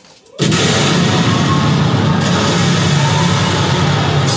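A live rock band comes back in all at once about half a second in, after a quiet break: a sudden loud crash of drums and cymbals, then the full band keeps playing hard and dense.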